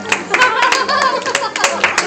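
Hands clapping in quick, uneven claps, over children's voices.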